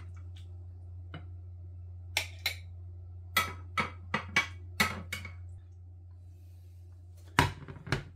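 A metal serving spoon clinking and knocking against a dish and plate as stew is spooned out: about a dozen sharp knocks spread through, the loudest near the end. A steady low hum runs underneath.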